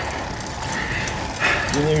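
Steady rushing noise from a road bike climbing a steep grade, wind and tyre noise on the handlebar-mounted action camera's microphone. A man starts speaking right at the end.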